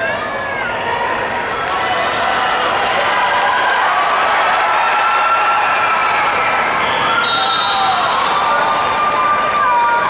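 Spectators yelling and cheering inside a domed stadium, swelling about two seconds in and staying loud during a running play. A referee's whistle sounds about seven seconds in and holds for a couple of seconds, marking the end of the play.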